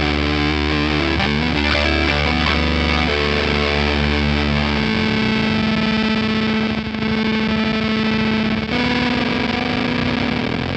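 Electric guitar played through a Fuzzrocious M.O.T.H. pedal with a heavily distorted tone. A few changing notes are followed by one long held note whose tone changes about halfway through, as a knob on the pedal is turned.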